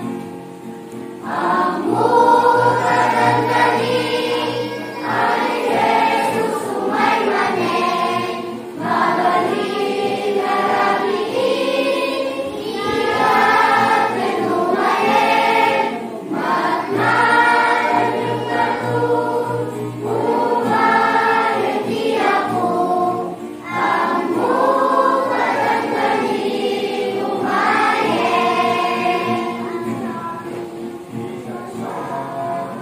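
A mixed choir of young voices singing a Christian song in phrases a few seconds long, with short breaks between phrases. The singing comes back in about a second in, after a brief dip.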